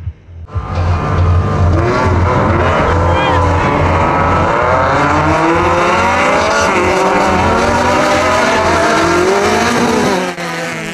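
Several race-car engines revving hard at once, many pitches overlapping and climbing and falling together, starting about half a second in.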